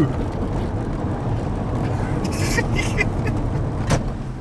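Steady low rumble of a Lexus IS200's two-litre engine and road noise heard from inside the cabin while driving, with a sharp knock just before the end.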